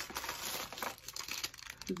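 Clear plastic packaging crinkling as it is handled, an irregular run of crackles.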